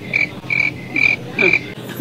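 Comedy sound effect of a chirping animal: a run of short, identical chirps at one pitch, about two a second, that stops near the end. It is the kind of effect that marks an awkward silence after a question.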